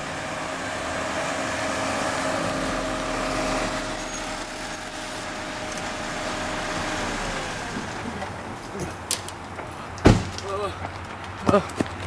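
A car pulling up and stopping, its engine running with a steady hum that drops in pitch about seven seconds in. A shrill, very high squeal sounds for a few seconds near the start, and a single sharp bang comes about ten seconds in, with a few lighter knocks after it.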